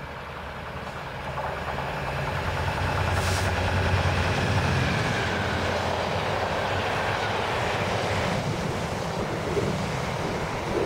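Freightliner Class 66 diesel locomotive with its two-stroke V12 engine, growing louder as it approaches and passes during the first few seconds. A steady rumble of container wagons rolling by on the rails follows.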